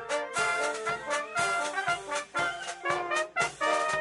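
Army brass band playing in the open air, trumpets leading with lower brass beneath, in short, detached rhythmic phrases.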